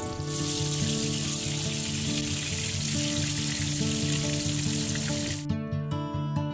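Oil sizzling in a steel wok as a wedge of pumpkin fries, a steady hiss that cuts off suddenly near the end.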